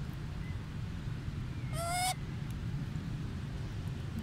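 A macaque gives one short coo call, slightly rising in pitch and lasting about a third of a second, about two seconds in.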